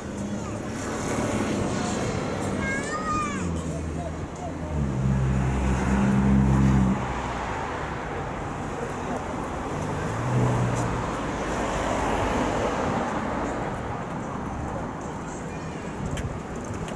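Street traffic with a vehicle engine droning close by, loudest about five to seven seconds in and briefly again near ten seconds, over passers-by talking. A few short high chirps sound about three seconds in.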